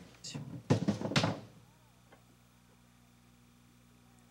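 A drum being picked up and set down upright on the set, giving a few knocks and a thunk in the first second and a half. After that only a faint steady hum remains.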